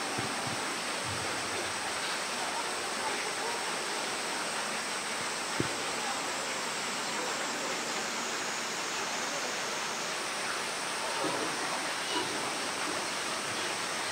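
Steady rushing hiss of falling water, even and unbroken, with one brief knock about five and a half seconds in.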